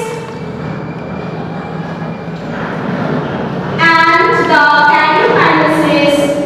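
A woman's voice in long, drawn-out, sing-song tones at the very start and again from about four seconds in, with a quieter stretch of room noise between.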